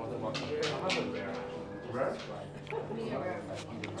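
Restaurant dining room sound: quiet, unmiked voices talking, with several sharp clinks of glassware and cutlery on the table.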